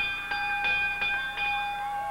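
Wrestling ring bell struck rapidly about five times, roughly three strikes a second, then left ringing: the bell signalling the end of the match after the three count.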